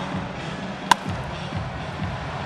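A single sharp crack of a wooden bat hitting a pitched baseball about a second in, over steady background music.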